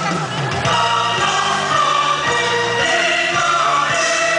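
A young girl singing into a microphone over a backing music track, both coming through a PA system.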